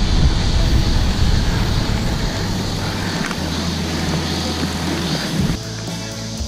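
Wind buffeting the microphone of a camera mounted on a moving road bicycle, a loud rushing noise heaviest in the low end, with a steady low hum joining in around the middle.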